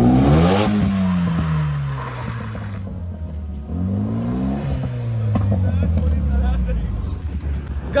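DC Avanti sports car's turbocharged four-cylinder engine revving hard as the car is drifted around on a wet road. The revs peak just under a second in, fall away, then rise again about four seconds in and fall away once more.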